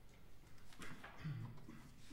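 Faint hall noise in the pause between two pieces: scattered small clicks and rustles, with one short low sound a little past the middle.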